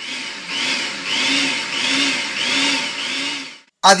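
Small countertop food processor running, blending flour and salt, with a regular wavering in its motor sound about every two-thirds of a second. It stops shortly before the end.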